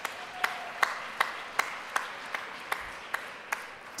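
Audience applauding in a large hall, with sharp single claps standing out at an even pace of about two and a half a second.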